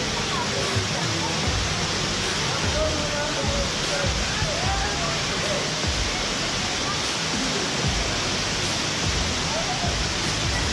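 Waterfall pouring into a pool, a steady rush of water, with faint voices of people in the water.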